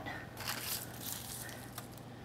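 Faint rustling and light clicks of metal tongs moving roasted carrots off a parchment-lined baking tray, with a soft rustle about half a second in and a few small clicks later.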